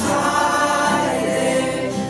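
Group of voices singing a worship song together, a steady, continuous sung melody.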